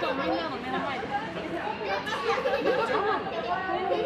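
Many people talking at once: a steady hubbub of overlapping, indistinct voices.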